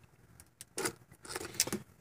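Small objects being handled and set into a pull-out storage drawer: faint clicks and rattles of a box against loose items, starting a little under a second in.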